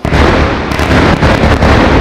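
Bombardment explosions: a sudden loud blast, then a deep continuous rumble with several sharp cracks about a second in.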